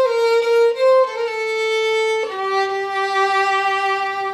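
Solo violin, bowed and played loudly: a short descending phrase of sustained notes with a quick mordent ornament on the A, settling on a long held low note about halfway through.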